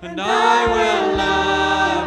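Church worship band performing live: several voices singing a worship song together in harmony over guitar, bass and drums. They come in on a new phrase right at the start after a brief breath pause.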